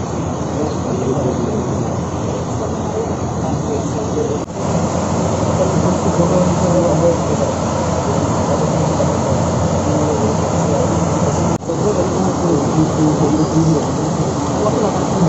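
Loud, steady murmur of indistinct crowd chatter, with no single voice standing out; it drops out for a moment twice.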